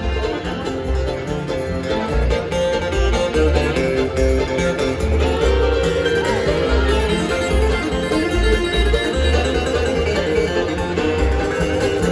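Bluegrass band playing live on acoustic instruments, heard from the audience: banjo, acoustic guitar, fiddle and mandolin over upright bass notes pulsing steadily underneath, in an instrumental passage without singing.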